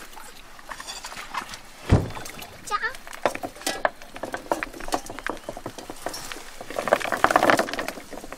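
Clams clattering onto the wooden deck of a boat as a plastic basket of them is tipped out, the clatter heaviest shortly before the end. A single heavy knock about two seconds in.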